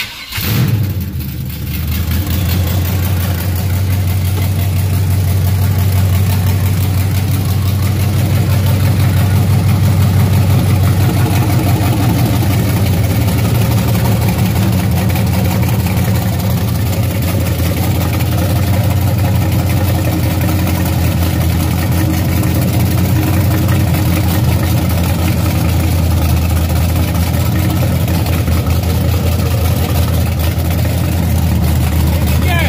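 A 1974 Chevrolet Caprice's freshly installed carbureted V8 starts right away and settles into a steady idle.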